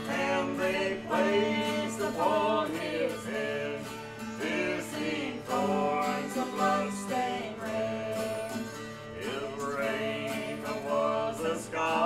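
A gospel song sung to two strummed acoustic guitars, in a country style.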